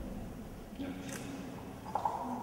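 Faint, indistinct speech over room noise, with a short sharp knock near the end.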